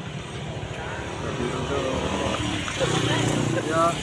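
A motor vehicle's engine rumble going by, growing louder toward the end.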